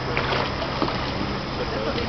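Kayak paddle blades dipping into calm creek water in short light splashes, over a steady noisy outdoor background with a low hum and faint voices.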